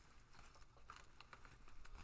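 Near silence, with a few faint light clicks and rustles as a makeup palette is handled.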